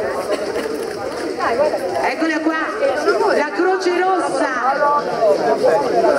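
Several people talking over one another in a small group: overlapping chatter, with no single clear voice.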